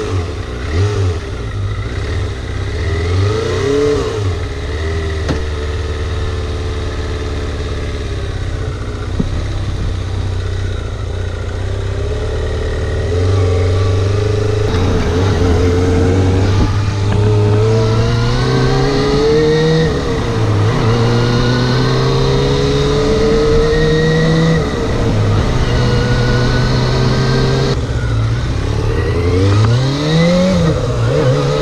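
Kawasaki ZXR250 inline-four motorcycle engine pulling away and accelerating through the gears. Its pitch climbs with the revs and drops at each gear change, several times over.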